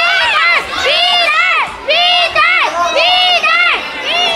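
Spectators shouting encouragement in high-pitched voices: several overlapping calls, each rising and falling, repeated again and again, with no break.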